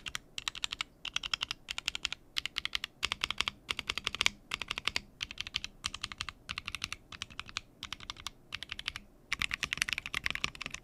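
Typing on a custom 40% mechanical keyboard (Jacky Lab hǎitún40) with DK Creamery Cookies n' Cream linear switches on a PC plate and GMK Noel keycaps. The keystrokes come in quick bursts with short pauses between them, and there is a longer pause shortly before the end.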